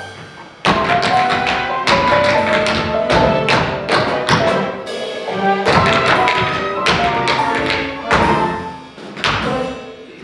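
Theatre pit band playing an upbeat dance break, cut through by many sharp taps and thumps on the beats; the full band comes in a little over half a second in.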